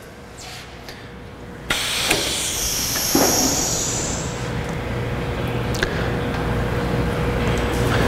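Park Industries CrossCut stone miter saw's cutting head on its rapid return, running steadily back along its rail. It starts abruptly about a second and a half in with a brief hiss.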